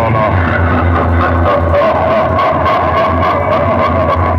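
Music with a heavy, continuous bass played very loud through a tall stack of horn loudspeakers on a DJ box sound system.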